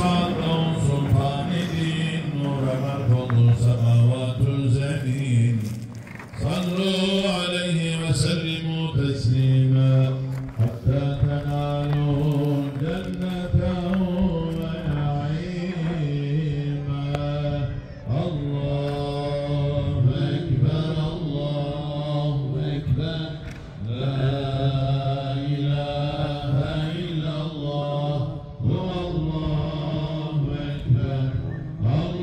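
A man chanting an Islamic religious recitation in long, ornamented melodic phrases, pausing briefly for breath every several seconds.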